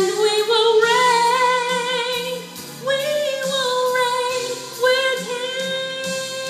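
A woman singing solo, holding long wordless notes with vibrato that move to a new pitch about every two seconds, over a steady instrumental accompaniment.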